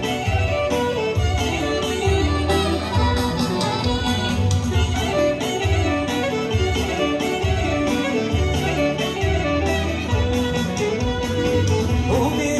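Live Albanian folk dance music: a clarinet leads a fast, ornamented melody over a keyboard accompaniment with a steady bass beat.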